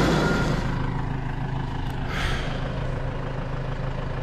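Tractor diesel engine. It drops in level about half a second in to a steady low idling hum, with a brief rustle about two seconds in.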